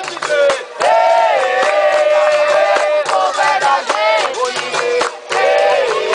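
Capoeira roda music: a chorus of voices singing long held notes over berimbaus, with regular hand clapping keeping the beat.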